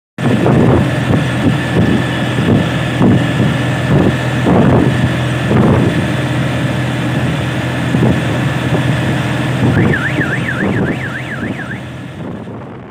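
Auto-rickshaw engine running steadily under way, heard from inside the open cabin, with rough pulses over the drone. Near the end a warbling, siren-like tone rises and falls about three times a second for about two seconds.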